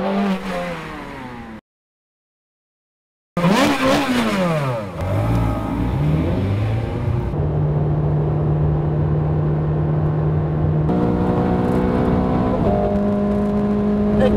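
Ferrari 430 Scuderia's V8 engine at high speed: a pass-by with falling pitch, cut off for nearly two seconds, then another pass rising and falling in pitch. It settles into a steady drone at constant revs that steps up in pitch twice.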